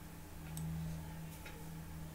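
Room tone: a steady low electrical hum with faint ticks about once a second.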